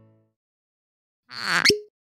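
The tail of plucked-string music fades out, then silence. About a second and a half in comes a short swelling hiss that ends in a single water-drop plop.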